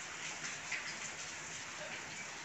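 Steady rain falling, a soft even hiss with a few faint ticks.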